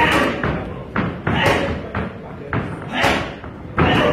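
Boxing gloves striking a trainer's focus mitts: a quick series of sharp smacks, about five or six in four seconds, some in quick pairs.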